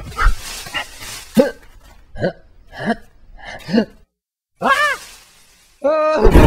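A series of short pitched vocal calls, each bending up and down in pitch, about one a second. They break off in a sudden silence of half a second, and one more call follows.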